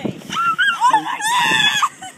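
A person squealing in a very high pitch, with short bending squeaks at first and then a longer held squeal near the end.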